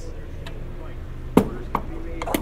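Gas pump nozzle being hung back in its holster: a sharp plastic-and-metal clack about one and a half seconds in, then a lighter knock, over a low steady hum.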